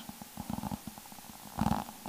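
A pause in a man's speech: faint low rumbling on a headset microphone, with a brief faint vocal murmur near the end.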